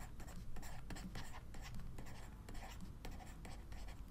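Faint scratching and many small taps of a stylus writing short pen strokes on a tablet, over a low steady hum.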